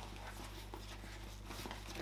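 Faint rustling and a few light knocks as a pair of figure skates in soft blade guards are lifted out of a sports bag, over a low steady hum.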